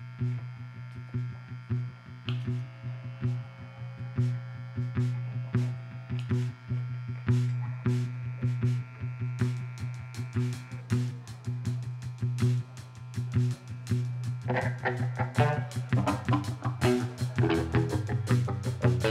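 Live rock band playing a song intro: a steady low buzzing drone under a regular ticking beat, with held higher notes above it. The fuller band comes in near the end and the music gets louder.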